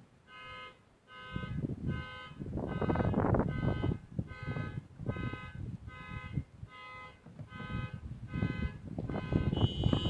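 An electronic alarm beeping steadily, a little under two short beeps a second, with a higher-pitched beep joining near the end. Low rustling and knocking sounds close to the microphone run under it.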